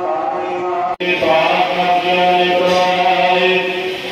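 Devotional Sikh chanting, many voices on long held notes, at a steady loud level. The sound drops out for a moment about a second in.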